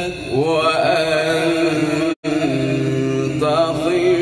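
A man's voice reciting the Quran in melodic chant, holding long notes and winding through ornamented turns of pitch. The sound cuts out completely for a split second about halfway.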